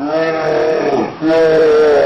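Two drawn-out, wavering cat-like roaring cries, back to back, each about a second long.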